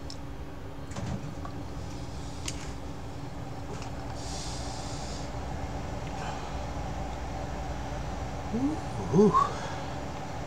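A man's breathy exhale and small vocal noises as he takes the heat of a hot chili pepper, over a steady low hum: a breathy rush about four seconds in, and a short rising hummed 'mm' near the end, which is the loudest sound.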